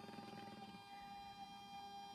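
Faint steady whir with thin high tones from a Baby Lock Destiny embroidery machine's embroidery unit moving the paper scanning frame during a built-in camera scan.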